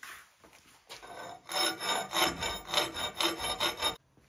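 Short back-and-forth scraping strokes of a hand tool on steel angle iron, about three a second, starting about a second and a half in, with the steel ringing.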